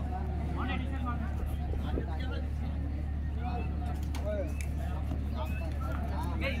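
Scattered calls and voices from kabaddi players and onlookers during a raid, over a steady low electrical hum.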